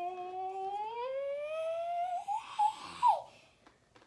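A child's voice holding a long drawn-out "aaa" vowel, slowly rising in pitch for about two and a half seconds, then breaking into a few short vocal sounds and a quick swoop up and down near the third second.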